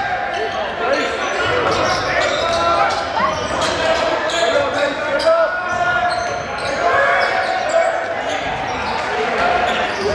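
Live game sound of a basketball being dribbled on a hardwood gym floor, with short sharp strikes throughout, under the steady voices of players and spectators in the gymnasium.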